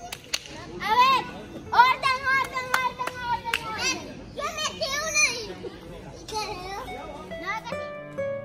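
Children shouting and squealing excitedly in several high-pitched bursts, with a few sharp clicks among the shouts.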